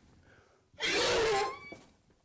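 A horse gives one loud snort through its nostrils, about a second in, lasting about half a second.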